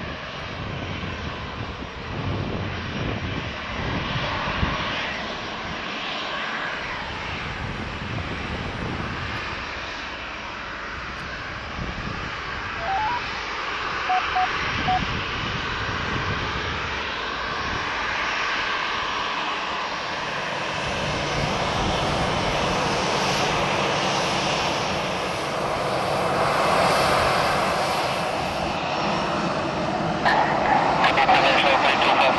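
Boeing 737-800's CFM56 turbofan engines running at taxi power, a steady jet whine and rumble that grows somewhat louder in the second half. A few faint short beeps sound briefly in the middle.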